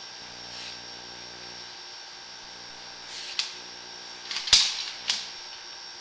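Steady electrical hum and high whine from a sewer inspection camera rig, with three sharp clicks or knocks about three and a half, four and a half and five seconds in as the push cable is pulled back.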